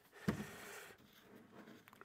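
Plastic jug of wheel cleaner handled at a workbench: a dull knock about a quarter second in, then faint soft handling noise that fades away.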